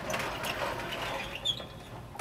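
The doors of a synagogue Torah ark being slid and handled: a steady rattling, scraping noise, with a short high squeak about one and a half seconds in.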